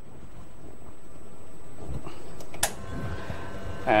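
Pump of a red two-group Gaggia espresso machine running as two espressos are pulled: a steady hum that grows slowly louder, with one sharp click a little over halfway through.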